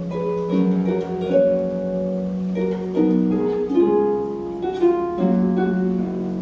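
Solo concert pedal harp playing a slow piece: plucked melody notes ringing on over low bass notes.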